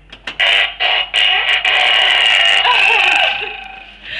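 A loud, harsh electronic sound effect from a wall speaker, set off by pressing a push button. It starts with a few short stuttering bursts, holds steady for about three seconds, then fades near the end.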